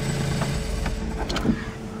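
Smart ForTwo CDI's 799 cc diesel engine idling, heard from inside the cabin as a steady low rumble with a faint steady hum, and one sharp click about one and a half seconds in. The engine has been overheating, which the dealer thinks could be a failed head gasket or a failing engine.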